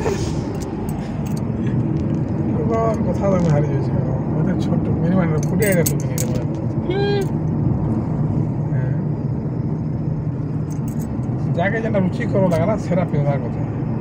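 Steady low road and engine noise of a car driving, heard from inside the cabin, with a voice speaking over it at times.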